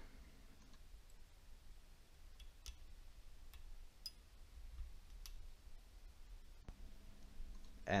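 Four or five faint, small clicks a second or so apart as a spring retainer clip is pushed onto a KO3 turbocharger's wastegate actuator rod end until it clicks into place.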